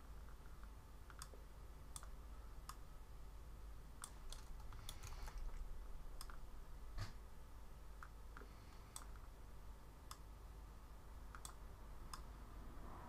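Faint, irregular clicks of a computer keyboard and mouse, a dozen or so scattered through the stretch, over a low steady hum.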